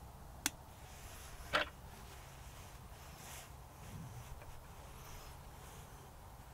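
Two sharp clicks about a second apart from a hand working the controls of a VEVOR MD40 magnetic drill, over a faint steady low hum.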